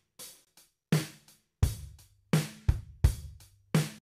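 A programmed hip-hop drum loop at 85 BPM playing back: separate kick, snare and hi-hat hits, each dying away quickly with short silent gaps between them.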